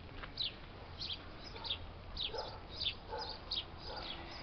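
Small songbirds chirping: a quick series of short, high, falling chirps, two or three a second.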